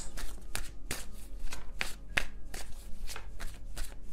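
A tarot deck being shuffled by hand: a quick, uneven run of card clicks and slaps.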